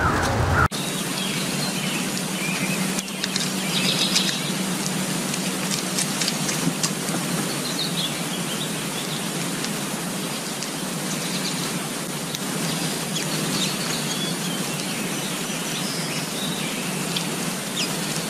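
Small birds chirping in short, scattered calls over a steady hiss of background noise.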